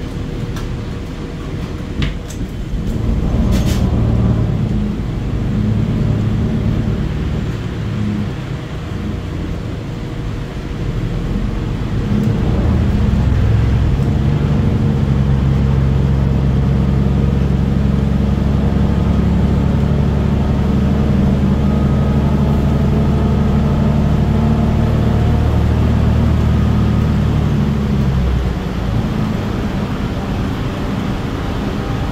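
Cabin sound of a New Flyer XDE60 articulated diesel-electric hybrid bus: a few sharp clicks and knocks in the first seconds, then the engine and drivetrain drone grows louder about twelve seconds in as the bus drives. The drone holds steady and drops back shortly before the end.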